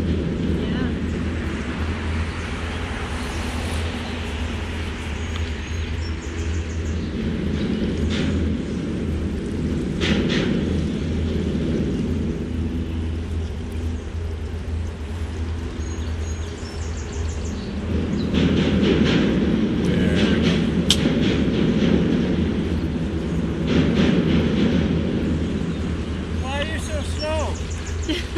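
Mercruiser 7.4 L big-block V8 inboard engine of a Sea Ray Sundancer cruiser running steadily at low canal speed, a constant low hum. Two sharp clicks come about ten seconds in and again near the twenty-one-second mark.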